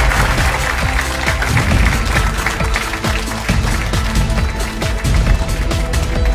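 Closing theme music with a heavy bass beat, and studio audience applause fading out under it in the first moments.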